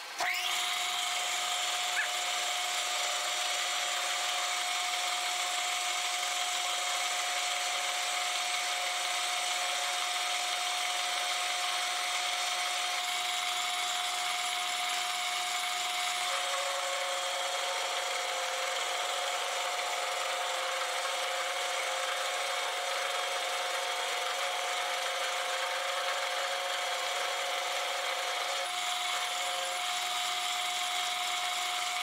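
Metal lathe running with its cutting tool turning down a shaft, a steady whine over an even hiss. A second, lower whine joins about halfway through and drops out near the end.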